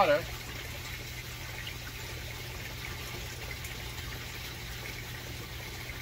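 Steady trickle and rush of water circulating through an aquaponics settling tank and its PVC pipework, with a low steady hum underneath.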